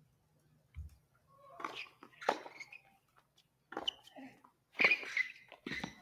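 Tennis serve and rally on a hard court: racket strikes on the ball, each a second or so apart.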